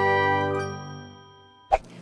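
The held, bell-like chord of an intro music sting rings out and fades away over about a second and a half. A short click follows near the end.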